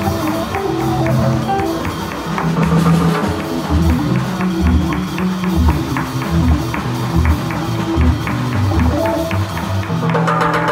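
Live jazz organ trio playing swing: an organ, with its bass line pulsing low, alongside an archtop electric guitar and a drum kit with steady cymbal strikes.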